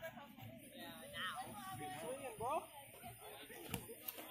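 Indistinct voices talking, with one sharp smack near the end, a boxing glove landing in sparring.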